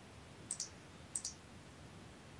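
Two faint computer mouse clicks, each a quick press-and-release double tick, a little over half a second apart, over a low steady hiss.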